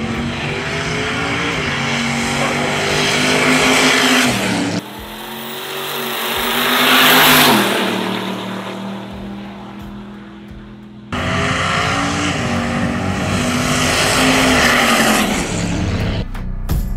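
Drag cars' engines at full throttle in three edited passes. In the first, the engine pitch climbs as the car accelerates. After an abrupt cut, a car comes past, swelling to its loudest about seven seconds in, and its pitch drops as it goes away. After another cut, a second hard run climbs in pitch again.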